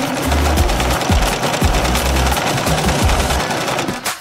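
Electric sewing machine stitching at speed, a rapid, steady run of needle strokes that stops right at the end. Electronic music with a steady bass beat plays under it.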